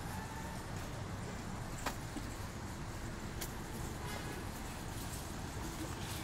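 Steady low rumble of outdoor background noise, with a sharp click about two seconds in and a fainter one about a second and a half later.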